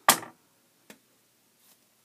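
A sharp snap as a clamp is pulled off a freshly glued balsa wing tip, then a single small click just under a second later.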